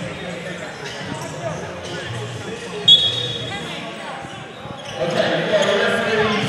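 A basketball being dribbled on an indoor court in a large, echoing hall. A short, sharp referee's whistle sounds about three seconds in, and crowd noise swells near the end.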